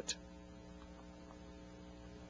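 Faint, steady electrical mains hum with a light hiss under it, the background noise of an old recording, with a few faint ticks about a second in.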